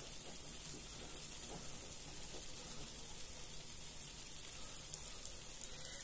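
A frying pan of eggs over tomato and peppers sizzling gently and steadily on the hob.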